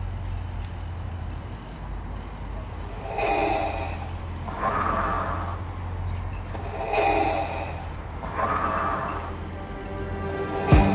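Ambient electronic music played live from a pad sampler: a low, sustained bass drone under four soft synth-pad swells that alternate between two chords about every two seconds, with no beat.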